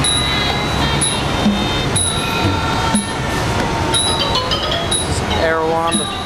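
Thai traditional ensemble music: small cymbals clink about once a second over a drum and steady melodic lines, with a pitched melody stepping down near the end.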